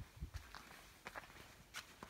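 Faint footsteps on a gritty sandstone and dirt trail, a few separate steps.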